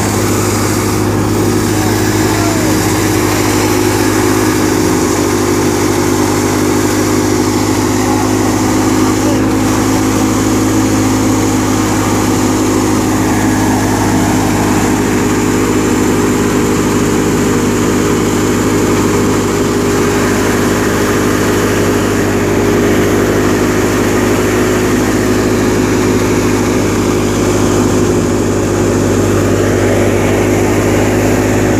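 Tractor-powered threshing machine running steadily while threshing gram (chickpeas): a loud, constant drone of engine and threshing drum with a steady low hum.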